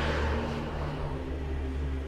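Film background score: a deep low drone under sustained held chords, with a swelling hiss that rises and fades.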